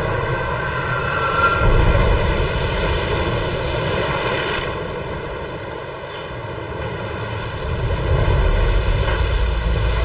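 Storm wind and waves breaking over a ship's bow at sea, a dense roar that swells about two seconds in and again near the end.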